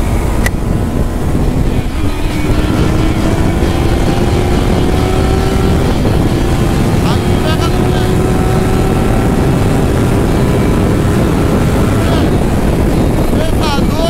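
Honda CB600F Hornet's inline-four engine pulling through its stock exhaust, the note stepping up about two seconds in and then rising slowly and steadily as the bike gathers speed, with heavy wind rush on the microphone.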